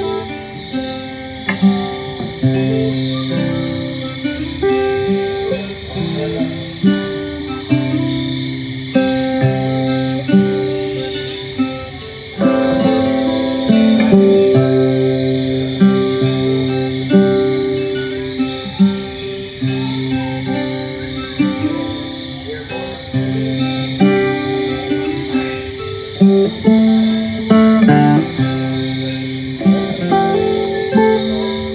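Acoustic guitar playing an instrumental lullaby, single picked notes ringing on over low bass notes; the playing grows louder and fuller about twelve seconds in.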